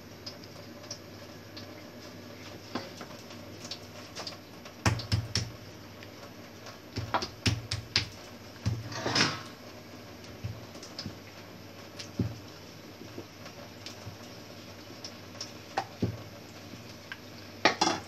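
Kitchen utensils knocking and clattering against a plate as puri dough is rolled out by hand: scattered single knocks with a few quick clusters, and one longer, noisier clatter about halfway through.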